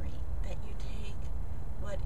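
Steady low rumble of outdoor background noise, with brief snatches of a person's speaking voice about half a second in and again at the very end.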